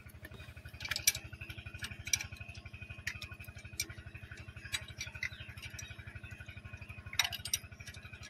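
Sharp metal clicks of a spanner working the tappet adjuster on a power tiller's diesel engine during tappet setting, a few scattered through, the clearest about one and two seconds in and again near the end. Under them an engine chugs steadily and faintly in the background.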